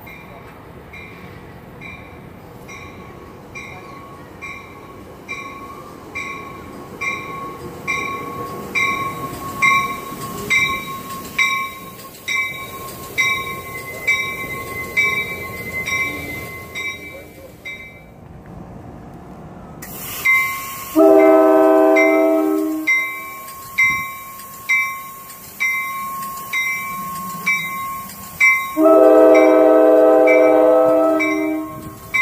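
An NJ Transit train rumbles through the station while a warning bell rings in even strokes, about one and a half a second. After a short break, the bell resumes, and a locomotive horn sounds two long chord blasts: one about 21 seconds in and another starting near the end.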